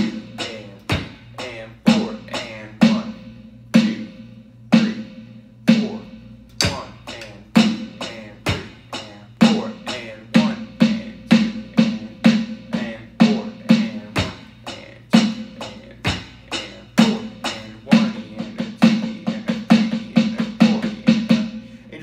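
Electronic drum kit played in time: a basic drum beat with snare-drum fills of quarter notes, then eighth notes, then sixteenth notes, the strokes coming closer together in the later part.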